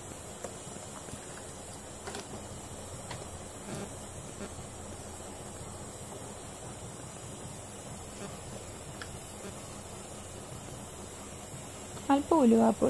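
Faint, steady sizzle of grated coconut and spice powders roasting in a nonstick pan, with a few light clicks.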